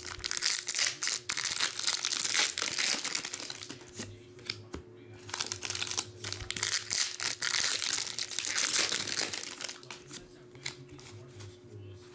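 Foil wrappers of Pokémon TCG booster packs crinkling and being torn open by hand, in two long stretches: one at the start and one from about the middle.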